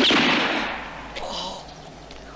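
A rifle shot at the very start, its echo fading away over about a second.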